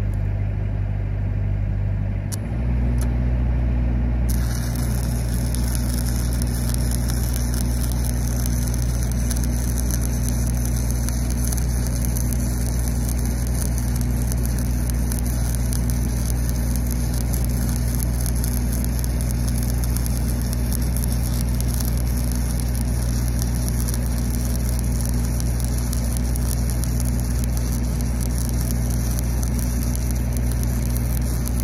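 Engine of a pipeline welding rig running steadily, stepping up in pitch about two seconds in. From about four seconds in it is joined by the steady crackling hiss of a stick-welding arc burning a 7018 low-hydrogen rod on the pipe joint.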